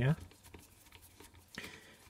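Faint ticks and small clicks of a screwdriver backing a small screw out of a diesel air heater, with a slightly louder click about a second and a half in.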